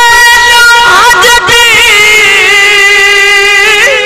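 A man's voice singing one long held note of a devotional verse through a microphone and loudspeakers, with a few melodic turns at first and then the pitch held steady, sagging slightly just before it ends.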